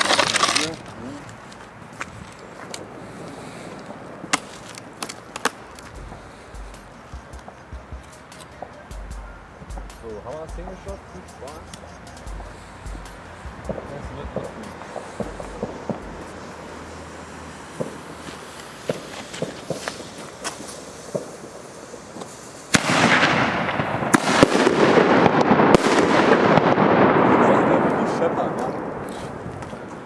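Fireworks and firecrackers: a sharp bang at the start, then scattered single bangs and pops. A little over twenty seconds in comes a dense, loud burst of firecracker bangs and crackling, which lasts about six seconds and dies away.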